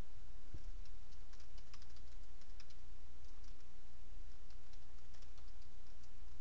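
Typing on a computer keyboard: runs of light key clicks, over a steady low hum.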